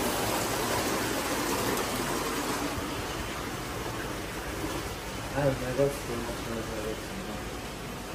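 Steady rush of water splashing down an artificial rock waterfall into an exhibit pool, growing slowly quieter; brief murmured voices about five and a half seconds in.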